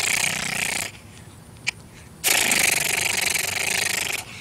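A man's mouth imitation of automatic gunfire fired at the sky: two long, rapid rattling bursts of hissy noise. The first stops about a second in and the second starts just after two seconds, with a single click in the gap.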